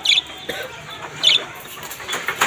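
Caged budgerigars chirping: two short, sharp, high chirps about a second apart.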